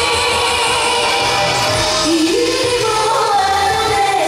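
A woman singing a trot song live into a microphone over backing music, her voice gliding up and down in pitch.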